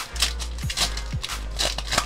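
Foil Pokémon booster pack wrapper being torn open and crinkled by hands, a quick irregular run of crackles as the cards are pulled out. Music plays underneath with a steady low bass.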